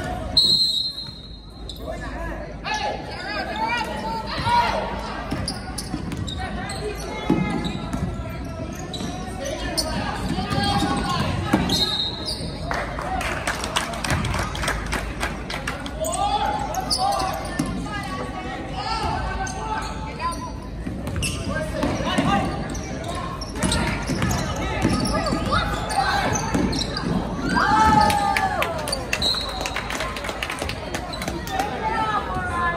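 A basketball bouncing on a gym's hardwood floor during a game, with players and spectators calling out across the hall.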